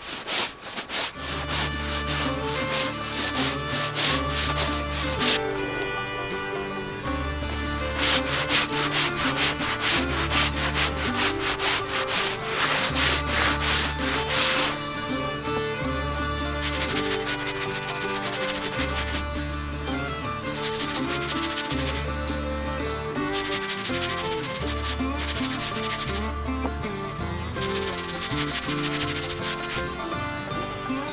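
Long-handled stiff brush scrubbing a soapy canvas wall tent panel in fast back-and-forth strokes, in heavy runs through the first half and lighter runs after. A background music track with a steady bass line runs underneath.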